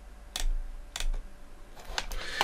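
Two sharp clicks from computer input, about half a second apart, then a fainter one near the end, over a low steady hum.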